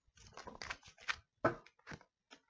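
Tarot cards being handled and drawn from a deck: about five sharp, irregular card snaps and clicks with light rustling between.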